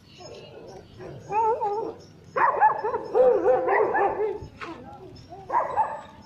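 A goat bleating: a short wavering bleat about a second and a half in, then a longer quavering bleat of about two seconds, and another starting near the end.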